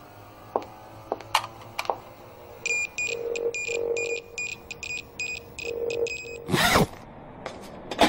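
Electronic instrument beeping: a rapid, uneven run of high blips over a low pulsing hum for a few seconds, with a few small clicks before it. A loud whoosh comes near the end.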